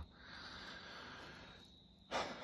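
A man's faint breath, a soft hiss that fades out after about a second and a half.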